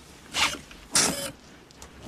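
Self-lacing sneakers' power laces tightening on their own: two short mechanical bursts about half a second apart, a film sound effect.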